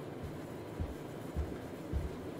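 Footsteps of hard-soled dress shoes on carpet: soft, low thuds at a slow, even pace, about two every second.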